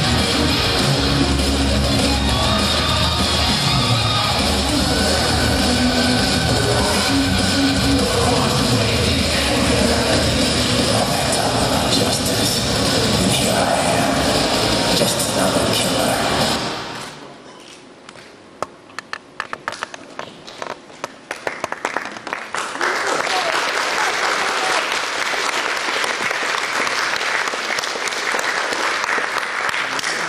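Loud guitar-driven rock music playing over the hall's speakers, cutting off suddenly a little over halfway through; a few scattered claps follow, then the audience breaks into sustained applause for the last several seconds.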